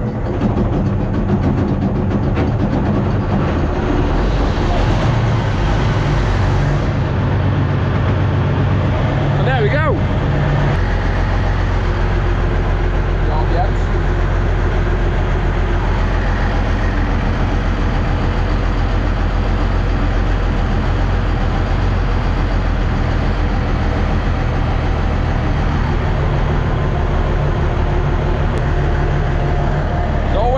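The 15.8-litre V6 diesel of a BMP-based armoured recovery vehicle catching on the starter and running, cold, with the throttle partly open. About ten seconds in, the engine note drops and it settles into a steady, lower-pitched idle.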